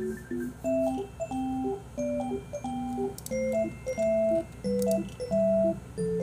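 Background music: a gentle melody of separate, clean held notes, about two a second.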